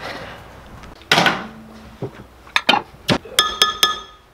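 Knocks and clinks of glass measuring cups and metal spatulas being handled on a wooden workbench, with a short rushing noise about a second in and several quick, ringing clinks near the end.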